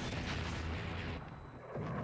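Rumbling blasts of missile fire and explosions. A long blast eases off a little past a second in, and another loud one begins just before the end.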